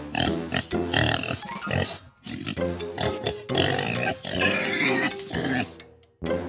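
Pigs oinking, call after call, over background music.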